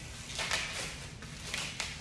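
Leaves being ripped off a hydrangea stem by hand: several short, sharp tearing rustles of leaf and stem.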